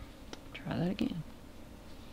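A brief, soft, murmured voice sound lasting under a second, with a few short clicks around it.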